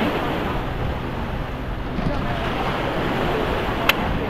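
Small waves breaking and washing up a sandy shore, with wind buffeting the microphone. A single sharp click comes just before the end.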